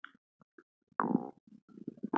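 Stomach gurgling from a belly bloated after eating Mentos, picked up right against the skin: one loud gurgle about a second in, followed by a few short, softer gurgles.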